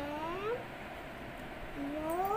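A young girl's drawn-out, rising vocal sounds: one long rising note ending about half a second in, and another starting near the end.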